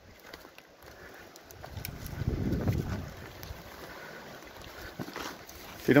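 Wind buffeting a phone's microphone: a low rumble that swells in a gust about two seconds in, then eases to a steady lower hiss, with a few faint ticks near the end.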